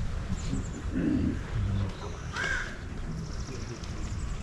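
A single crow caw about two and a half seconds in, over faint distant voices.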